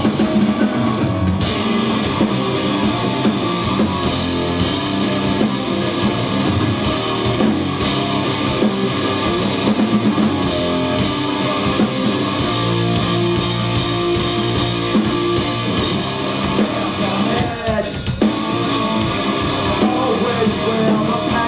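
Live rock band playing an instrumental passage: loud electric guitars, bass guitar and drum kit, with a brief drop in the music near the end.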